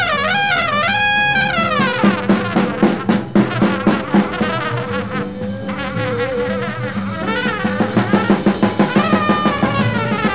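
Live 1960s free jazz played from a vinyl LP: horns wail in sliding lines over a steady held low drone and busy drums, and the drumming grows denser near the end.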